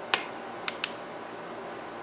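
Three sharp clicks from the switch of a handheld 1 W 445 nm blue laser pointer as it is switched on: a loud one just after the start, then two quick ones close together about half a second later. A steady hiss runs underneath.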